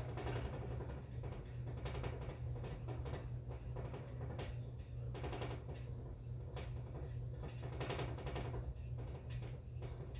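Muffled rubbing, scraping and irregular knocks against the microphone of a phone that is being handled or carried with its lens covered, over a steady low hum.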